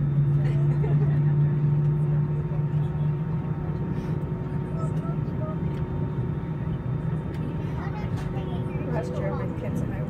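Steady low cabin drone inside an Airbus A320 on the ground, a deep hum with a couple of steady higher tones over it; the deepest part of the hum eases off after about three seconds.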